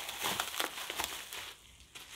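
Packaging crinkling and crackling in a run of small sharp clicks as a box is unwrapped by hand, dying down near the end.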